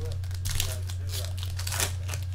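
Foil trading-card pack wrapper crinkling as it is handled, in crackly bursts that are loudest about half a second in and near the end. A steady low electrical hum runs underneath.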